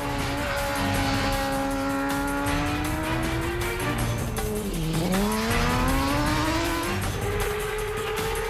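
Kawasaki ZX-6R's inline-four engine running at high revs. Its pitch sags sharply about five seconds in as the bike slows for a corner, then climbs again as it accelerates out. Background music plays underneath.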